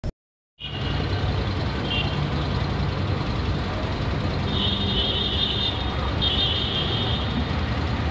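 Motor vehicle engine running steadily, starting after a half-second gap. Two high-pitched tones, each about a second long, come about halfway through.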